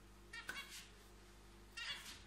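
Two short, faint, high-pitched animal calls, one about half a second in and one near the end.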